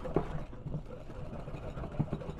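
Wire whisk stirring softened butter, sugar and egg in a glass mixing bowl by hand: a soft, steady scraping with a few light clicks of the wires against the glass.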